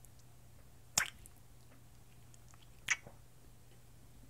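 Two short wet mouth clicks, lip smacks, about two seconds apart, over a faint steady low hum.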